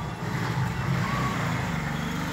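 Steady low rumble of an engine running, with a brief faint higher tone about a second in.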